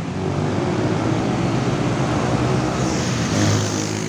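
Diesel engine of a large tour bus running as the bus drives toward the listener, its drone growing louder near the end. A higher hiss joins about three seconds in.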